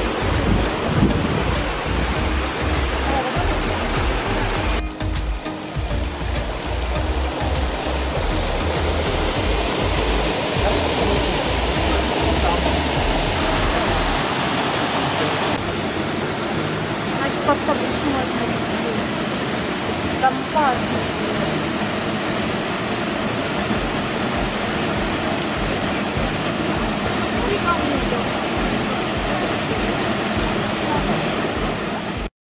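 Rushing water of a mountain waterfall and river, a steady rush, with the sound changing abruptly at about 5 and 15 seconds in. A low rumble underlies the first half.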